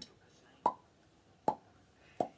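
Two finger-in-cheek mouth pops, made by snapping a finger out of the corner of the mouth, a little under a second apart.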